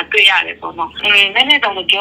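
Speech only: a person talking over a telephone line, the voice thin and cut off in the highs.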